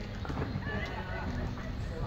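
A horse cantering on a sand arena, its hoofbeats soft thuds over a steady low rumble, with people's voices in the background.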